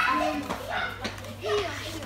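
A toddler babbling and vocalising in short, fairly high-pitched utterances, over a low steady hum.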